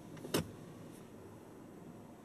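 A single sharp click in a parked car's cabin about a third of a second in, over the low steady hum of the idling car.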